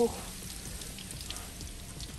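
Coca-Cola fizzing with a steady fine crackle as it foams over after Mentos were dropped in.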